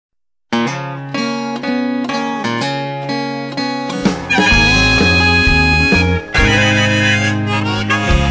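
Instrumental intro of a blues-style song: picked acoustic guitar notes start about half a second in, then a harmonica (blues harp) comes in with long held notes over a bass line about four seconds in.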